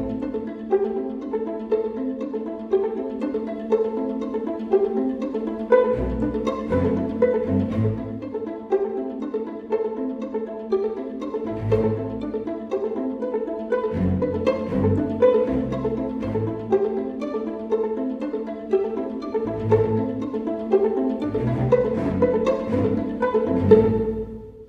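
Instrumental background music: a steady run of short pitched notes, with a deeper bass part coming in for a few stretches.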